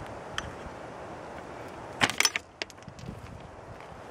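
A sheet of paper being handled and moved aside: a single click, then about halfway through a brief burst of sharp crackling clicks, over a steady background hiss.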